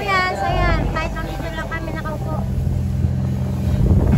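Speedboat engine running underway with a steady low drone that strengthens about half a second in, and a voice heard over it in the first couple of seconds.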